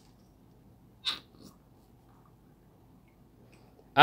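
A brief squelching squeak about a second in as the shaft and piston are pulled out of an oil-filled RC car shock body, with a fainter second sound just after. The piston inside is loose or broken.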